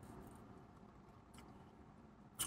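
Near silence: quiet car-cabin room tone, with one faint click about one and a half seconds in.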